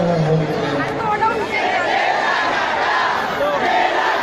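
A large crowd shouting and cheering, with many voices overlapping into a continuous din. Music ends about half a second in.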